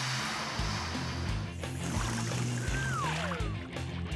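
Air hissing out of a balloon through a drinking straw as the balloon deflates and drives a small foam boat, over background music. About three seconds in a single whistle-like tone falls in pitch.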